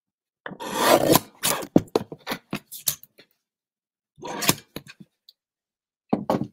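Sliding-blade paper trimmer cutting cardstock: a rasping cut about half a second in, followed by a run of short clicks and rustles, and another brief burst a little after four seconds.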